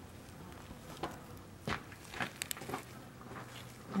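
Faint handling sounds from a rabbit carcass being skinned by hand: a few soft crackles, and a quick run of sharp clicks about two and a half seconds in, as the skin is peeled back off the flesh.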